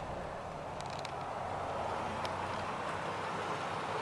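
Faint steady background noise with a few light clicks.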